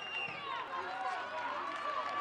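High-pitched women's voices shouting and cheering over each other on the pitch, with no clear words. A steady high whistle note fades out just after the start.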